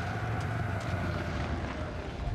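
A low, steady rumble with a rushing noise over it, a dark ambient drone from the soundtrack.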